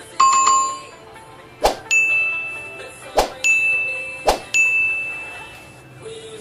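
Sound effects of a subscribe-button animation. A chime at the start, then three times a mouse click followed a moment later by a notification bell ding that rings on and fades.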